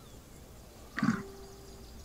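Film soundtrack: a short ape grunt about a second in, over a low hum, followed by a faint steady held tone.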